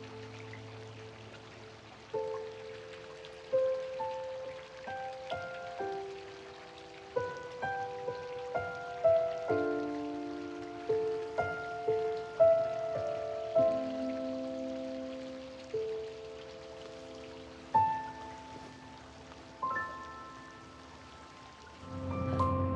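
Slow, sparse background music: a gentle melody of single notes, each struck and then fading, with a few notes sounding together now and then.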